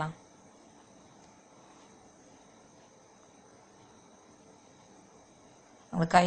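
Faint, steady chirring of insects, otherwise near silence.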